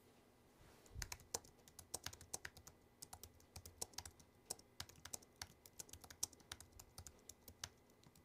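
Typing on a computer keyboard: a run of quick, irregular key clicks that starts about a second in and stops just before the end.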